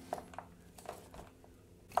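Faint, scattered clicks and creaks of a wood screw being tightened by hand with a manual screwdriver, through a plastic bush in a pull-up bar's metal bracket into an MDF doorstop.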